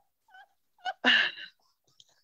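A person's short, breathy vocal burst, lasting about half a second and starting about a second in, with near silence around it.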